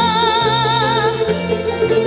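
Canarian folk ensemble playing a folía: timples, lutes and guitars strumming and plucking over bass notes, with an accordion. A long held note with vibrato, sung, ends about a second in.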